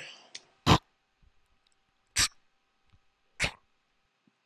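Three beatboxed snare sounds, short sharp mouth-made bursts about a second or so apart, played back from a recording.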